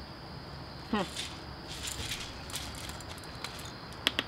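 Faint small plastic clicks as the orange cap is worked off a shell-shaped plastic bottle of airsoft BBs, a few scattered ticks over a steady quiet outdoor background.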